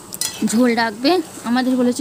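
A voice sings a melody of held, even notes over the clink and scrape of a metal spatula stirring goat curry in a metal pan.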